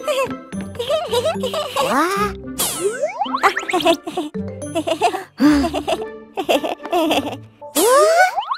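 Playful children's cartoon music with springy boing-like glides, and steep rising zapping sweeps, one about halfway through and one near the end as a toy ray gun fires its beam.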